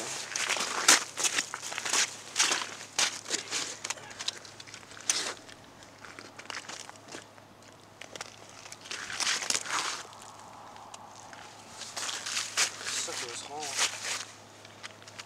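Irregular crunching and rustling: boots and stiff winter clothing moving on snow-covered ice while fishing line is handled by hand at a tip-up hole. The noises come in clusters, busiest in the first few seconds and again near the end.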